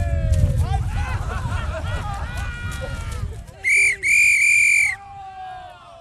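Referee's whistle blown twice, a short blast and then a longer steady one of about a second, about two-thirds of the way in. Before it, shouting voices over a low rumble.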